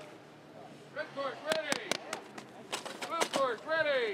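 A snowboarder's short wordless yells in the start gate, several in quick succession from about a second in, each one falling in pitch, with sharp smacks among them.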